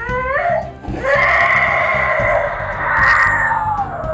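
A toddler crying: a short wail, then about a second in one long, loud cry that falls in pitch near the end.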